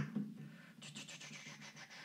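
A faint scratchy noise during a pause in speech, over a low steady hum.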